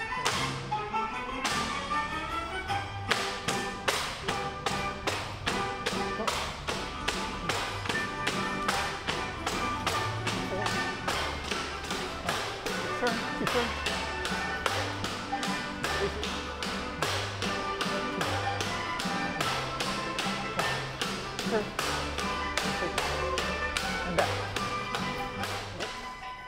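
Tinikling bamboo poles being struck and clapped in a steady rhythm, about three sharp clicks a second, over music with a bass line.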